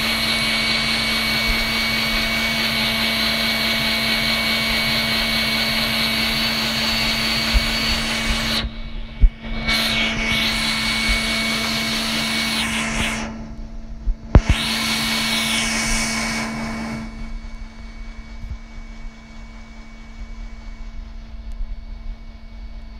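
A motor-driven household appliance whirring loudly and steadily. It switches off about eight and a half seconds in, then runs twice more for a few seconds each, with a few knocks when it stops, before a quieter hum remains.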